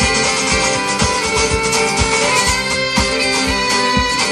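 Live band playing an instrumental passage: fiddle lead over strummed guitar, with a steady kick-drum beat about two a second.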